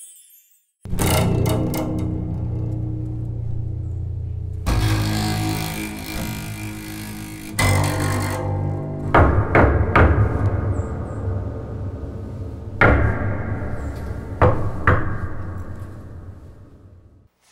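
Electric bass guitar playing low sustained notes, with a cymbal crash about five seconds in and several sharp hits in the second half.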